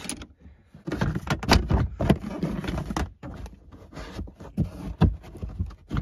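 Irregular metallic clatter, knocks and scraping from a wrench and hands working the negative terminal clamp on a car battery, in bursts over several seconds.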